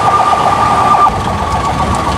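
Street traffic around an idling jeepney: engine and road noise, with a steady high-pitched tone held throughout and a quick fluttering sound in the first second.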